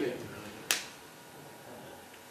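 A single sharp click about two thirds of a second in, in a quiet room.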